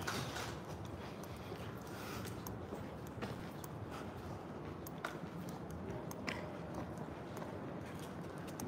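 Faint outdoor city ambience, a steady low background noise, with a few light clicks and ticks scattered irregularly through it.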